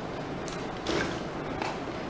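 A few faint knocks and light shuffling from an actor moving and reaching under a table on stage, over steady room noise.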